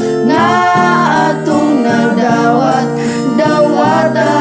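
Three male voices singing a Cebuano gospel song of thanksgiving together in harmony, with sustained notes.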